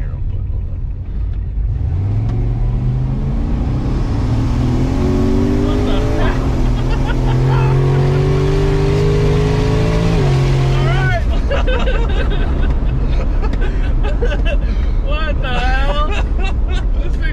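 Mercury Marauder's modified 4.6-litre V8 under hard acceleration, heard from inside the cabin: the engine note comes in about two seconds in and climbs steadily, dips briefly about six seconds in, climbs again, then drops away as the throttle is lifted about eleven seconds in. Laughing and shouting from the occupants follow.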